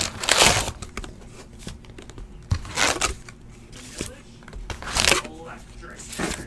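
Foil trading-card packs crinkling three times as they are pulled from the box and set onto stacks.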